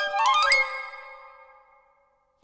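Piccolo and xylophone duet: sharp struck xylophone notes under the piccolo's line, then a quick rising run about half a second in that ends the phrase. The last note fades away over about a second and a half, to near silence.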